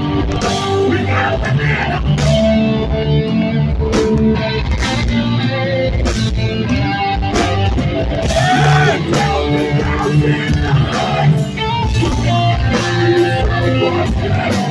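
Hardcore band playing live at full volume: distorted electric guitars and pounding drums, with the vocalist shouting into the microphone.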